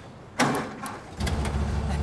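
A car engine that would not start, cranked after a broken spark-plug wire was repaired. A sharp burst comes early, then about a second in the engine catches and runs with a steady, deep rumble.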